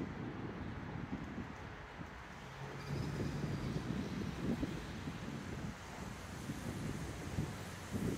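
Wind buffeting the microphone as an uneven low rumble, with a brief steady low hum about three seconds in.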